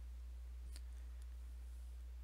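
Steady low electrical hum, with a few faint scattered clicks.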